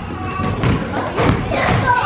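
Basketballs bouncing on a hardwood gym floor and off the hoop: a run of irregular thuds in a large hall, with children's voices.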